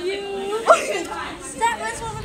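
Several people's voices chattering and calling out, with one drawn-out vocal note and a sharp upward jump in pitch, the loudest moment, about two thirds of a second in.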